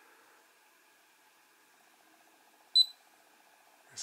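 One short, high-pitched electronic beep about three-quarters of the way through, the RunCam Split's button-press feedback beep as a menu item is selected. Otherwise near silence with a faint steady hum.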